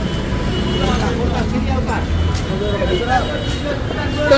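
Voices talking nearby over street traffic, with the steady low rumble of CNG auto-rickshaw engines running at a rickshaw stand.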